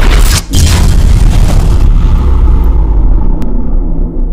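Cinematic title-reveal sound effect: a loud, deep boom, a second hit about half a second in, then a low rumble that carries on while the hiss above it fades away over the next two seconds.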